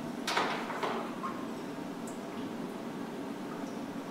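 Plastic chemical cylinders being shifted in a water-filled darkroom tray: two short scraping knocks about half a second apart near the start, then a steady background hiss.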